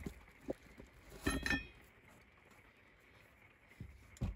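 Parts being handled in a cardboard parts box: soft handling noises and one brief clink a little over a second in, with a short ring to it.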